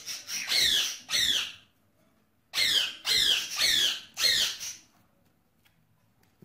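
Budgerigars squawking: two sharp calls at the start, then four more in quick succession about two and a half seconds in, each a short cry that falls in pitch.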